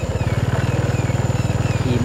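Motorcycle engine running steadily at low speed with a fast, even putter as the bike is ridden slowly along a dirt track.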